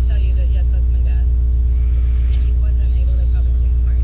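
A loud, steady low hum with a row of even overtones, under faint speech from a TV news interview.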